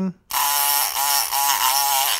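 Multipick Kronos electric pick gun running, its pick blade vibrating in the keyway of a brass padlock held under light tension. The buzz starts about a third of a second in and wavers slightly in pitch as the blade works the pins.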